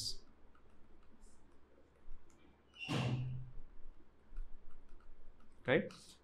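Faint light taps and scratches of a stylus writing on a pen tablet, with a short wordless vocal sound, a murmur or breath, about three seconds in.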